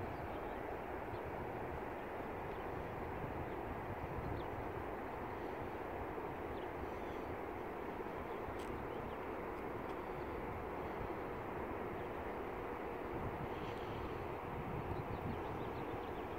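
Steady road and engine rumble of a moving car, heard from inside the cabin.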